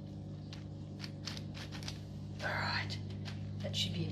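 Plastic 9x9x9 V-Cube puzzle being twisted in the hands, its layers giving a run of short clicks and scrapes, over a steady low hum.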